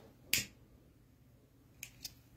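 One sharp snap or click about a third of a second in and a fainter one near the end, over quiet room noise.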